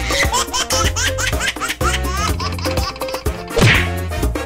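Background comedy music with a dubbed-in laughter sound effect: a run of quick, rising giggles over a steady bass line, with a short loud burst of noise near the end.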